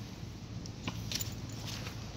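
Faint footsteps on dirt and leaf litter while a bundle of dog leashes with metal clips is handled, with a few light clicks.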